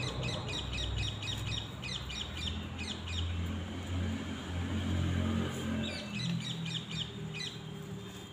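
A bird calling in quick runs of short, sharp high chirps, about four or five a second, in two bursts: one at the start lasting about three seconds and another near the end. Underneath is a low rumble that swells to its loudest in the middle.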